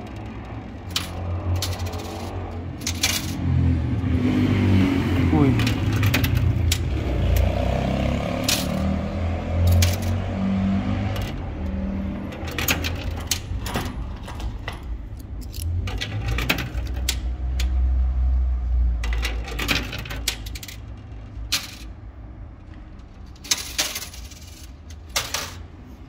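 Coins clinking and dropping in a coin pusher arcade machine, with many separate sharp clinks spread throughout over a low steady rumble.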